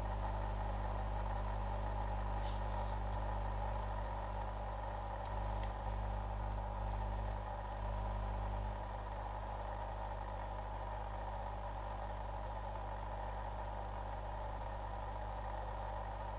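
Steady electrical hum with a faint hiss, with a few faint clicks early on and the low hum dropping slightly about nine seconds in.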